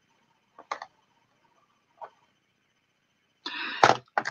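A few faint clicks of small jewellery being handled, then a short rustle near the end.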